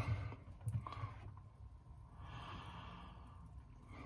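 A man's faint, soft breath out, like a quiet sigh, lasting about a second and a half from about two seconds in, with a small click shortly before.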